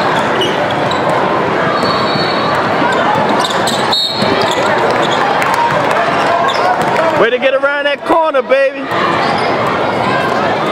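Basketball being dribbled on a hardwood court, echoing in a large gym over steady crowd and player noise. A person's voice calls out loudly about seven seconds in, lasting under two seconds.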